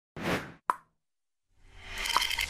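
Logo-intro sound effects: a short whoosh, then a single sharp pop, a moment of silence, and a swelling whoosh that rises in the last half second.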